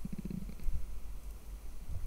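A low, steady rumbling hum with faint, uneven low murmurs, strongest in the first half-second.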